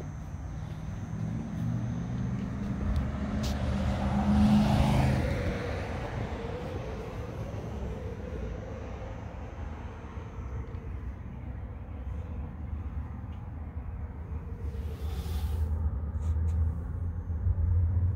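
Outdoor road-traffic noise: a steady low rumble, with a vehicle swelling past about four to five seconds in.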